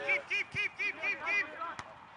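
A young man laughing: a quick run of six short 'ha' syllables, about four a second, then a brief sharp click near the end.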